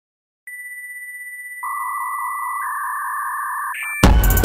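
Steady electronic sine tones: a tone near 2 kHz with two faint high whines above it starts about half a second in. A louder, lower tone near 1 kHz joins about 1.6 s in, and the upper tone steps down a little about a second later. All of them cut off just before the end, with a short click-like change.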